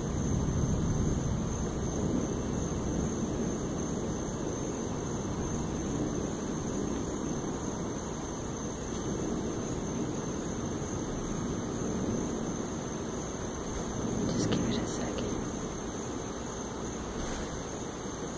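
Low rumble and wind noise of an approaching thunderstorm before the rain has started, swelling about a second in and again near 14 seconds.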